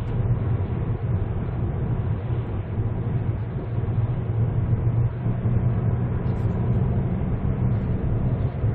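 Steady engine and road noise inside the cabin of a 2010 Hyundai Avante MD (Elantra) cruising along a highway, with an even low hum.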